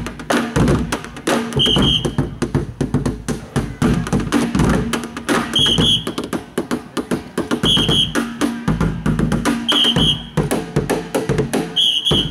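Ensemble of drummers beating sticks on plastic barrels and their plastic tops in a fast, dense rhythm. A short high ringing note cuts through about every two seconds.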